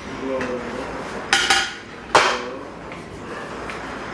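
Metal bakeware clattering as a muffin pan is handled: a short rattle a little over a second in, then a sharp ringing clank about two seconds in.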